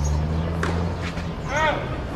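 Tennis ball struck by a racket on a serve, with a second sharp hit about half a second later, then a short pitched call near the end.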